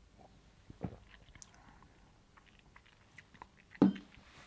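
A man sipping beer from a glass and swallowing: quiet mouth and swallowing sounds, with a brief louder one about a second in and another just before the end.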